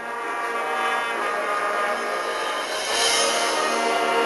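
High school marching band playing a loud, sustained brass chord. It swells in the first second, then holds.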